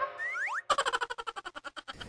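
Cartoon-style comedy sound effect added in editing: a few quick rising whistle-like glides, then a rapid run of clicks, about a dozen a second, that stops just before speech resumes.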